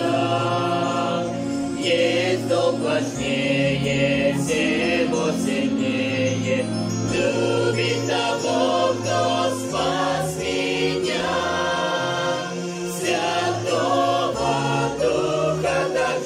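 A small mixed group of men and women singing a Russian hymn together, line by line with short breaks between phrases, accompanied by an electronic keyboard.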